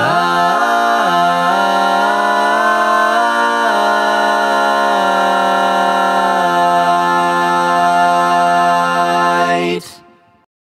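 Four-part male barbershop a cappella harmony, one man's voice multitracked, singing the song's closing chord. The parts shift pitch over the first few seconds, then settle on one long held chord that cuts off shortly before the end.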